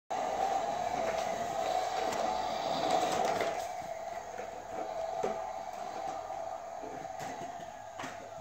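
Toy truck pushed across a tiled floor, its plastic wheels rolling with a steady rumble and a few small knocks, loudest for the first three seconds or so and softer after that.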